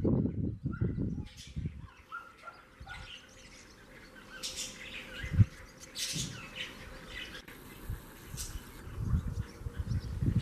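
A flock of swallows twittering in flight, with short high calls scattered throughout. A low rumble fills the first two seconds and returns near the end, and a single low thump comes about five seconds in.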